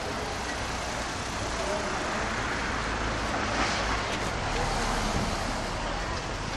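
Town street traffic: cars running along the road, a steady rumble of engines and tyres that swells a little about halfway through.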